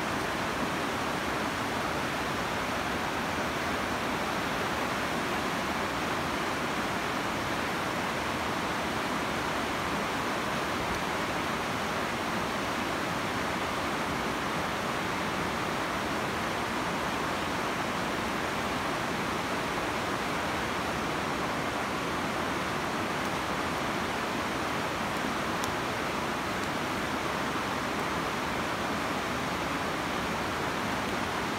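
Steady rush of a fast whitewater river, an even hiss with no breaks.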